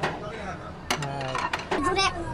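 A sushi plate clinking as it is fed into the table's plate-return slot, one sharp clink about a second in and lighter clicks near the end.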